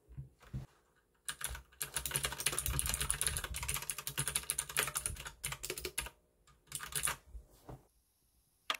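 Typing on a mechanical keyboard with clicky blue switches: two single keystrokes, then a fast run of crisp clicks lasting about five seconds, and a few short bursts near the end.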